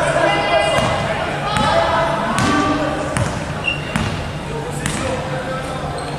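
A basketball bounced on a hardwood court in a large gym, a little more than once a second, with players shouting over it.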